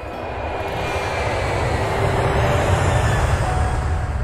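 Jet airliner passing low overhead: a broad rushing roar with a deep rumble, growing louder over the first three seconds.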